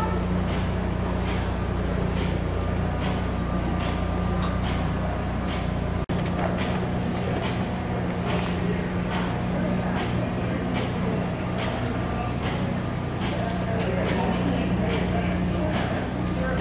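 A steady low hum in a large room, with indistinct voices and faint music in the background. The sound drops out briefly about six seconds in.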